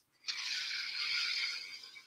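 A person breathing out audibly through the mouth: one long breath of about a second and a half that fades away near the end.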